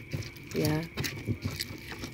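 Pestle knocking and grinding against a clay cobek mortar, crushing fried chillies, tomato and garlic into sambal, in irregular short knocks. A brief voice sound comes about half a second in.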